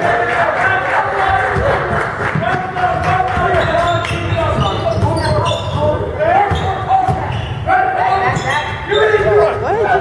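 A basketball bouncing on a hardwood gym floor during play, with players' shouts and calls throughout, echoing around a large gym.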